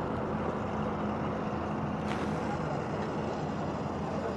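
Excavator's diesel engine running steadily as its hydraulic arm moves the bucket, with a short hiss about halfway through.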